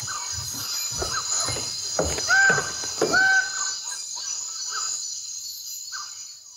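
Tropical forest ambience: a steady high-pitched insect buzz under a series of short calls from birds-of-paradise, the two loudest a little over two and three seconds in.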